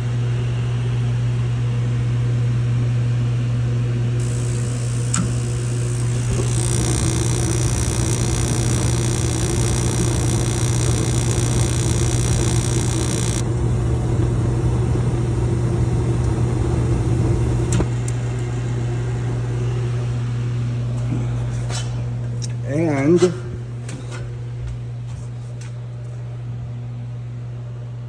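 Mr. Heater Big Maxx MHU50 gas unit heater running, its blower giving a steady low hum. Its gas burners fire and add a louder rushing for about ten seconds in the middle, then go out while the blower keeps running. This is the short burner cycling the owner is asking about.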